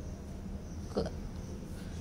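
A steady low background hum, broken about a second in by one short vocal sound from a woman, like a brief hiccup or half-voiced syllable.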